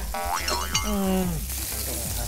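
A cartoon-style 'boing' sound effect, a springy pitch that swoops up and back down, followed by a short 'mm' from a voice. Burger patties sizzle on a grill pan underneath.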